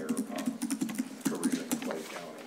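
Typing on a computer keyboard: a quick, uneven run of key clicks, several a second.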